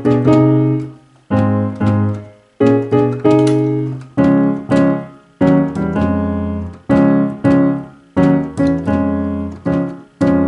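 Gospel chords in C-sharp played on a digital keyboard with a piano sound. Full chords are struck about once a second, each ringing out and fading before the next.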